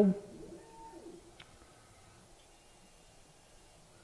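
Very quiet hum of an Eppendorf epMotion 5075 TMX liquid handler's gripper arm moving across the deck, heard only as a few faint, short steady tones at changing pitches and a faint tick. The unit runs very quietly.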